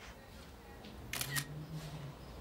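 Compact digital camera taking a photo: two quick shutter clicks about a second in, then a low steady hum for about a second.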